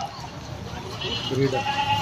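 A goat bleating in the second half, a short call followed by a held note, with faint voices behind it.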